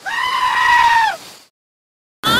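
A single long, high bleat used as a comic sound effect, held steady for about a second and dropping in pitch as it cuts off.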